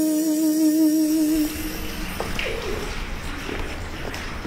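A male singer holds a final 'ooh' on one pitch, with vibrato near its end, until it stops about a second and a half in. After it comes a quieter hissy background with a low rumble and scattered faint clicks.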